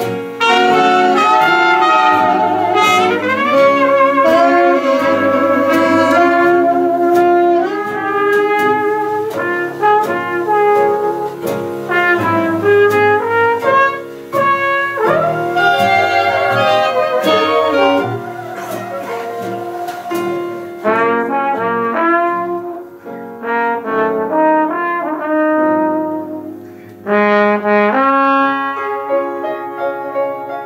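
A jazz dance band with trumpets, trombone, reeds, piano, guitar, string bass and drums playing a ballad live. The full ensemble is loud at first, then grows quieter and softer-toned about two-thirds of the way through.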